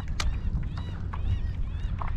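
Steady low wind rumble on the microphone over open water, broken by a few sharp clicks and several short, high, arched chirps from birds.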